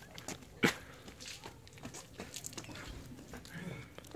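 Faint, scattered clicks and knocks, the sharpest about two-thirds of a second in.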